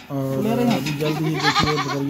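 Goat bleating: one wavering, arching call in the first second, followed by further broken calls.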